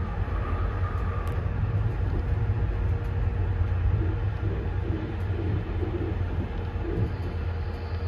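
Passenger train running at speed, heard from inside the carriage: a steady low rumble of wheels on the track.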